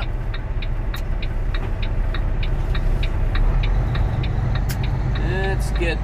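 Semi truck's diesel engine running steadily, heard inside the cab, with the turn-signal indicator ticking about three or four times a second until it stops about two-thirds of the way in.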